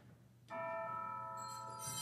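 Bells rung at the elevation of the host during the consecration: several sustained bell tones come in suddenly about half a second in, with more, higher tones joining near the end.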